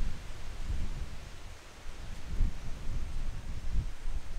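Wind buffeting the microphone: an uneven low rumble that swells and eases in gusts, over a faint steady hiss of moving air.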